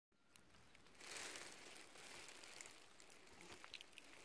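Near silence: faint outdoor background hiss, rising a little about a second in, with a few faint ticks near the end.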